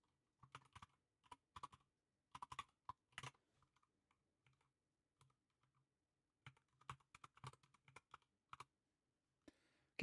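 Faint computer keyboard typing: scattered keystrokes in short bursts, with a pause of about three seconds in the middle.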